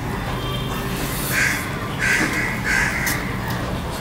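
A crow cawing three times, about a second apart, from a little over a second in until near the end, over the soft sounds of rice being mixed by hand.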